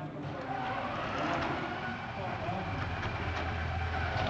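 FRC competition robot's electric drive motors whirring as it is test-driven, heard under echoing background voices in a gym.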